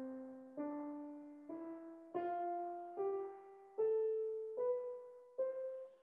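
Grand piano playing a slow one-octave ascending scale: eight evenly spaced single notes, each struck and left to die away, stepping up in pitch. It is played the way a student does it, with the hand working from a fixed position.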